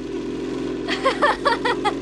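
Motorcycle engine running with a steady drone, joined about a second in by a person's short bursts of laughter.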